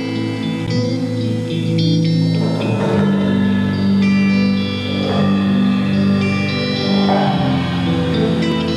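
Live band playing an instrumental introduction: held chords over electric bass guitar, with the harmony changing about once a second.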